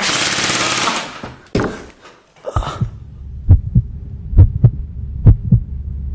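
A man's loud scream lasting about a second, a couple of short noisy bursts, then a heartbeat sound effect: three low double thumps (lub-dub) about one a second.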